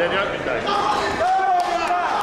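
Several voices shouting and calling out at once, overlapping, with a few sharp knocks near the end.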